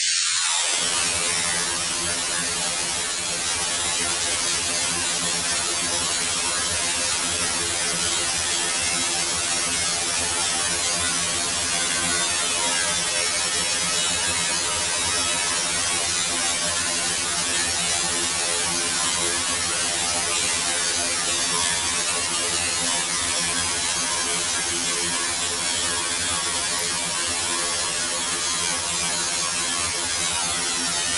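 Loud computer-generated harsh noise music, in the spirit of harsh noise wall. It is a dense, unbroken wall of hiss over a stack of steady buzzing tones, and within the first second it opens out from a high band to fill the whole range.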